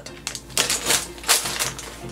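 LEGO packaging being handled in a plastic storage brick: a sealed plastic polybag crinkling and small items clicking against the bin, in a quick, irregular series of clicks and crackles.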